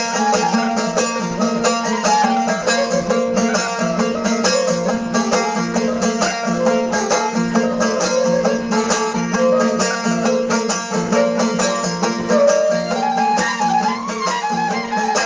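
Balochi instrumental music: a suroz melody played over a rapidly strummed long-necked lute, with a steady low drone underneath.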